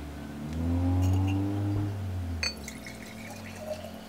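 Water poured from one glass jar into another, the pitch of the filling rising from about half a second to two seconds in. A short knock comes about two and a half seconds in.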